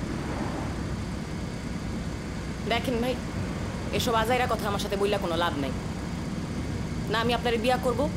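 Low, steady rumble of a running vehicle heard from inside its cab.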